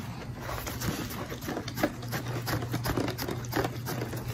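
A dog sniffing and nosing at a cardboard advent calendar compartment to get at a treat, with irregular small taps and clicks.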